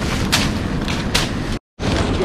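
Dry palm leaves rustling and crackling as they are handled, with a few sharper snaps; the sound cuts out completely for a moment near the end.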